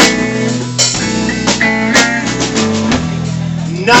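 Live rock band playing an instrumental stretch between sung lines: electric guitar, bass guitar and drums, with several sharp drum and cymbal hits over held guitar notes.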